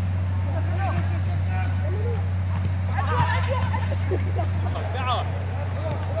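Football players shouting and calling to each other across the pitch during a small-sided game, the voices loudest about halfway through, over a steady low hum.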